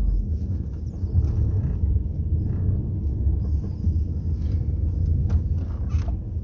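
Low, uneven rumble of a car heard from inside its cabin, with a few faint clicks.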